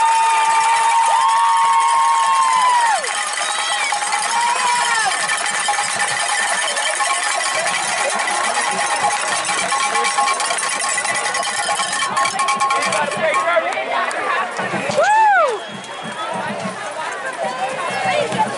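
Spectators at a football game cheering and yelling a made field goal, with long held yells that fall away about three seconds in and a single rising-and-falling shout about fifteen seconds in.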